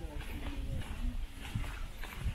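Faint voices of people talking at a distance, over a low, uneven rumble.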